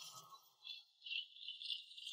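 Faint, uneven rattling of an upright piano being wheeled on its casters across a wooden floor.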